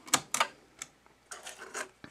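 A handful of sharp plastic clicks and light clatter, several in quick succession in the second half, as a cassette tape is handled and loaded into a Fisher DD-280 cassette deck.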